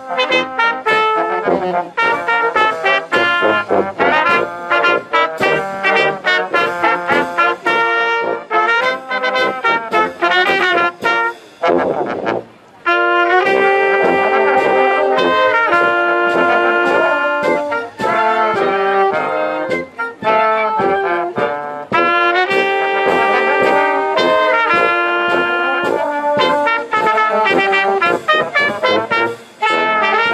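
Small wind band of flutes, clarinets, saxophone, trumpets, trombone and sousaphone playing, with quick short notes at first, a brief break about twelve seconds in, then fuller held chords.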